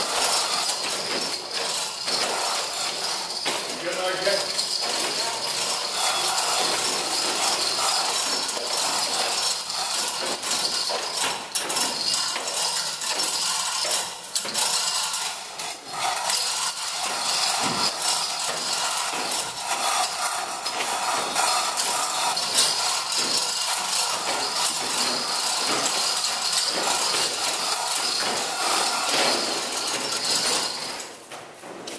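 Hand chain of a manual chain hoist rattling and clinking steadily as it is pulled hand over hand, hoisting a heavy load.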